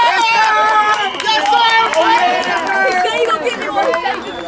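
Many voices shouting and cheering at once, loud and overlapping, with some long held yells, as a player breaks away for a touchdown.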